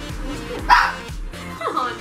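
A dog barking, with one loud sharp bark under a second in, over electronic background music.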